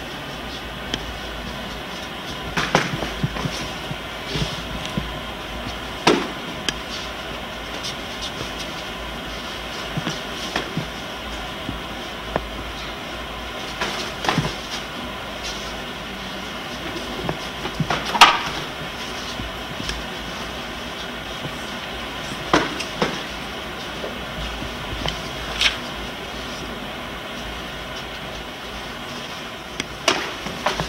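Karate sparring: scattered sharp slaps and thuds of punches and kicks landing on padded sparring gloves and foot pads, about a dozen in all, the loudest about eighteen seconds in, over a steady background hiss.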